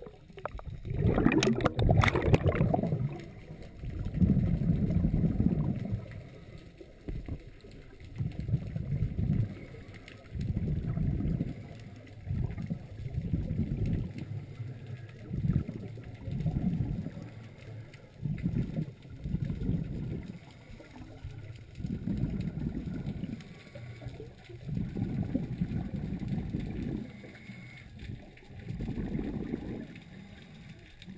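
Water rushing over an underwater camera housing for the first few seconds as it goes under, then muffled gurgling bursts of scuba regulator bubbles every second or two as a diver breathes out on the descent.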